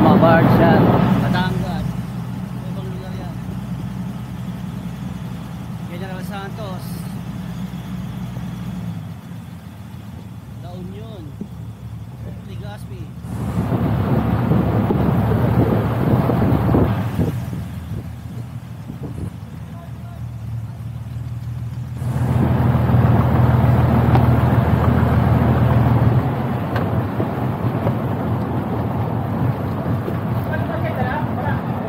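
Engine of a small motorized bangka running steadily, its tone shifting about nine seconds in and again around twenty seconds. A louder rushing noise swells over it twice, around fourteen and twenty-three seconds.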